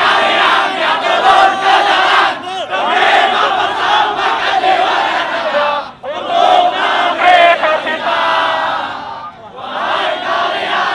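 Large crowd of protesters shouting together, loud, with a short break about six seconds in.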